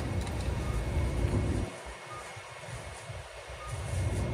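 Low hum of a Sapporo streetcar A1100 'Sirius' low-floor tram standing at a stop, heard from inside the car. About halfway through, the hum drops away for about two seconds, then comes back.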